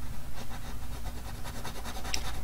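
Coloured pencil scratching on paper in short, repeated colouring strokes, over a low steady hum.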